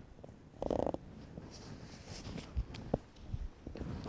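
Faint rustling of a stretchy fabric arm sleeve being pulled on, with a short muffled thump about a second in and a couple of light clicks near the three-second mark.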